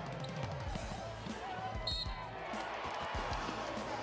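Basketball game sound in a crowded gym: a ball bouncing on the hardwood with crowd noise throughout, and a brief high-pitched tone about two seconds in.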